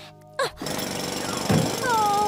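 Cartoon sound effects: a short sweep about half a second in, then a dense, fast rattling buzz for about a second, a whoosh, and a short gliding pitched sound near the end.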